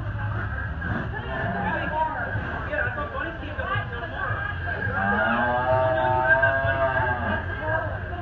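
Several people chatting, and about five seconds in one long cow moo that rises and then falls in pitch over two to three seconds.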